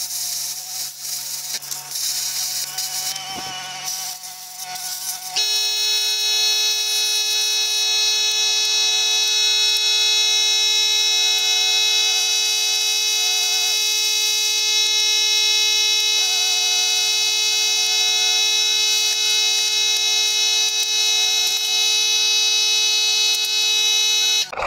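Plasma cutter cutting steel plate, a hiss for the first few seconds. From about five seconds in, a steady electric buzz with a high whine holds at a constant level.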